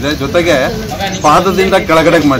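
A man speaking Kannada in an outdoor interview.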